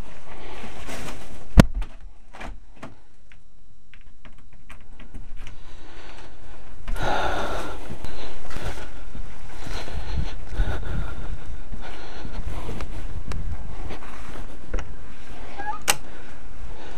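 Handling noise on a helmet-mounted mini camera's microphone as its wearer walks: a sharp knock about a second and a half in, then rustling and scuffing with a low rumble that grows steadily louder.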